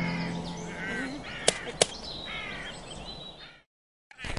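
Crows cawing several times as the music dies away, with two sharp clicks in quick succession about a second and a half in; the sound fades out to nothing near the end.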